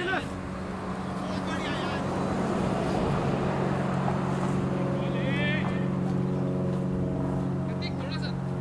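An engine running steadily: a low, even drone that grows fuller from about five seconds in, with faint voices over it.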